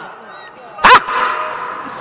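A man's single short shout, "haan", through a loudspeaker system about a second in, trailing off into a faint steady ring from the PA.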